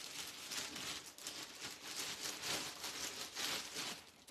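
Saree fabric rustling as it is unfolded and handled close to the microphone, an irregular crinkly rustle that swells and fades.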